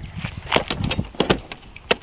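Footsteps crunching on a gravel path, mixed with knocks from handling the camera and gear: a string of irregular sharp clicks, with the loudest knock near the end.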